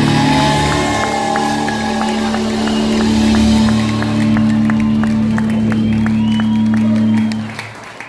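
Live country-rock band ending a song on a long held chord of electric guitars and drums. The crowd claps and cheers over it, and the music drops away about seven and a half seconds in.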